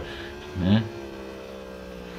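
Yamaha R1 superbike engine heard faintly on the onboard recording, one steady note whose pitch sinks slowly as the revs drop. A short vocal sound, like a brief laugh or word, comes in under a second in.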